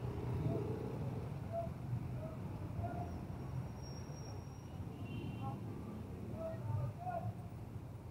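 City street ambience: a steady low rumble of traffic with indistinct voices of passers-by.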